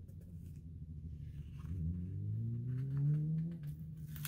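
Motorcycle engine droning, its pitch rising steadily as it accelerates from about a second and a half in and loudest around three seconds in. There is a faint rustle of sticker paper.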